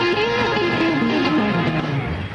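Live blues band music with an electric guitar playing a run of notes that steps down in pitch.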